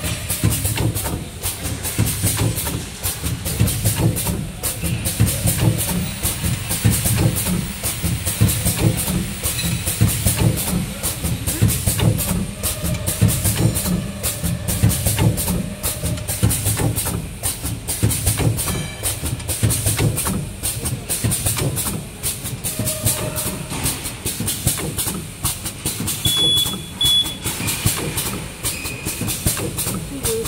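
Four-side sealing alcohol swab packaging machine running: a loud, steady, fast mechanical clatter from its rollers, belt drive and sealing stations.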